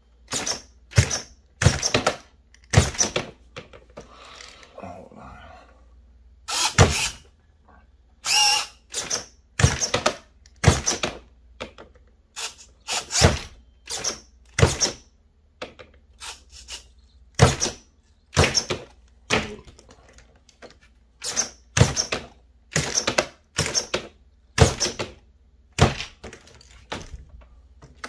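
Redcat SixtyFour RC lowrider hopping, its single servo powered straight from a 2S battery: the front end snaps up and slams back down, a string of sharp clacks and thunks, one to two a second. There are short pauses about a third of the way in and again past the middle.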